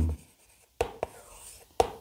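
Chalk on a blackboard as a word is written and then circled: a few short taps and faint scratches.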